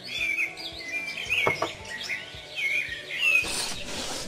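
Small birds chirping and tweeting: many short, quick calls that rise and fall in pitch, overlapping throughout. There is one light knock about a second and a half in.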